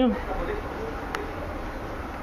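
Steady low background hum, with one faint click about a second in.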